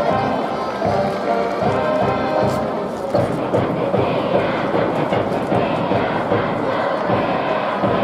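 School brass band in a stadium cheering section playing a cheer tune over a regular drum beat. About three seconds in, the held tones give way to a denser, noisier mass of crowd voices and cheering.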